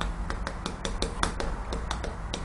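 Chalk writing on a chalkboard: an irregular run of quick, sharp chalk taps and short strokes as characters are written.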